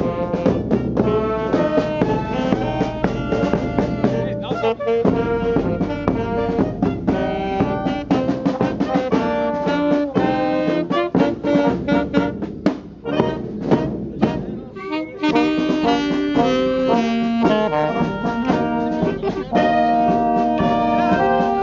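A small wind band playing live: a saxophone with brass instruments over a steady drum beat, an upbeat tune with many short notes.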